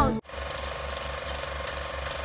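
Old film projector sound effect: a steady, rapid mechanical clatter over a hum. It starts as background music cuts off a fraction of a second in.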